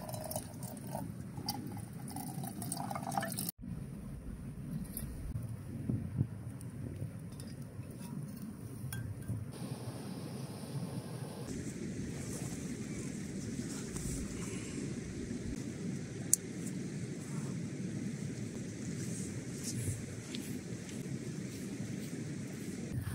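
Water poured from a bottle into a metal camping pot on a gas canister stove, lasting about three and a half seconds and ending abruptly. After that, only a steady low outdoor rumble.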